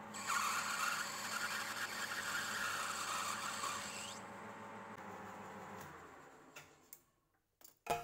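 Metal lathe turning a brass bar: a steady running hum with the hiss of the cutting tool on the brass, which stops suddenly about four seconds in. A fainter hum then fades away, and the sound drops out shortly before the end.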